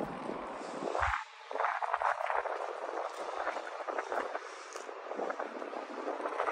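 Quiet outdoor background: a steady hiss with faint light ticks scattered through it, denser during the first half.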